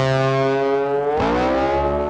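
Intro music sting on distorted electric guitar: a loud chord held, then sliding up in pitch a little over halfway through and ringing on.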